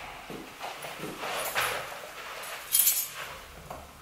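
Footsteps and the knocks and clicks of an apartment front door being opened and pulled shut, the loudest click a little before three seconds in.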